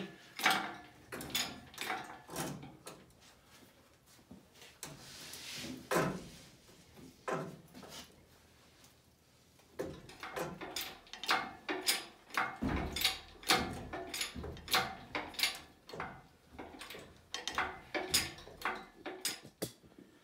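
Scattered metal knocks and clunks from the Land Rover's 2.25-litre diesel engine and its hoist chain as the hanging engine is worked free and lifted on a shop crane. A short scrape comes about five seconds in, and the knocks come thick and fast over the second half.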